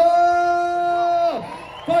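A man's amplified voice through a PA holding one long drawn-out shouted call, which falls away after about a second and a half, with a crowd cheering underneath.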